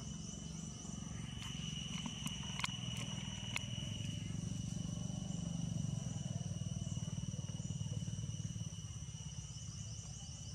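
Steady high-pitched insect drone over a low rumble that swells about halfway through, with a few sharp clicks in the first few seconds.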